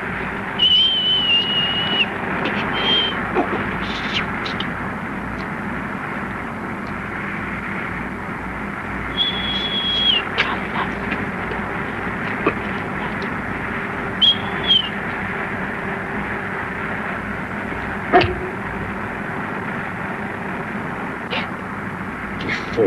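Steady road and wind noise of an open convertible on the move, with a Great Dane giving short, high, thin whines four times, begging for food.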